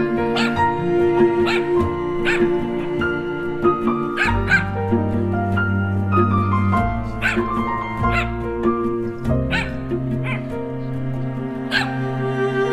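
Background music of sustained, slowly changing chords, over which a small Yorkshire terrier gives about ten short, high yips and barks at uneven intervals.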